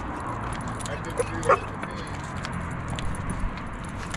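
A hound gives a short whine about a second and a half in, over outdoor background noise, with the light jingling of collar tags and faint voices.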